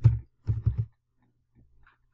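Computer keyboard keystrokes: one sharp keypress at the start, then three quick dull key taps about half a second in, over a faint steady low hum.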